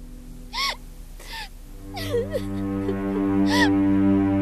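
A woman sobbing, with short breathy gasping cries about once a second. About halfway through, a low steady drone of background music swells in and becomes the loudest sound.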